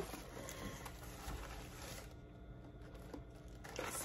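Faint rustling and crinkling of tissue paper being unfolded in a cardboard box, dying down about halfway through.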